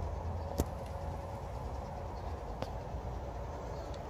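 Steady low background rumble, with two faint clicks, one about half a second in and one past the middle.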